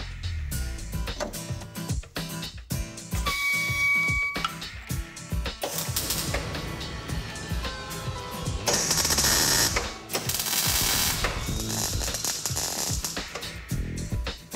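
Background music with scattered clicks, and two short bursts of crackling hiss about nine and ten and a half seconds in from a MIG welder tacking a steel repair panel into a car's wheel arch.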